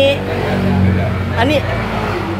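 A motorbike passing by on the street, its engine a low steady drone that is strongest about a second in.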